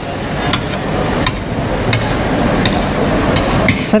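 Turkish ice cream vendor's long metal paddle knocking and clanking against the metal ice cream tubs, about five sharp knocks at uneven intervals over a steady street-noise haze.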